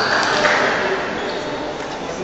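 Table tennis ball clicking on bat and table, a few sharp clicks near the start, over the steady chatter of a crowded sports hall with other tables in play.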